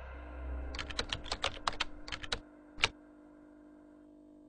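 Computer keyboard typing: a quick run of about a dozen keystrokes over a second and a half, then one last separate keystroke a moment later.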